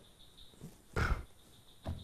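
A man's single short, noisy breath about a second in, in an otherwise quiet pause.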